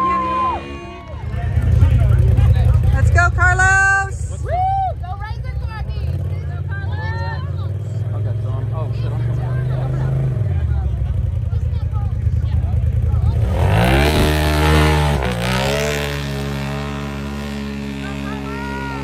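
Side-by-side engines running hard, with a loud rev that rises and falls again about fourteen seconds in. Voices call out over the engines.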